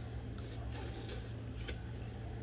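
Faint eating sounds: chewing, with a few soft clicks of a spoon and mouth, over a steady low hum.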